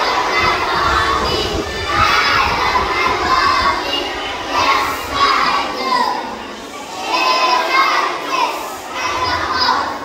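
A large group of young schoolchildren singing loudly together in unison, in phrases of a second or two with short breaks between them, as an action song with hand gestures.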